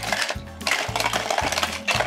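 Die-cast toy cars clattering along and off the plastic ramp of a toy truck as a lever pushes them, over background music with a steady beat.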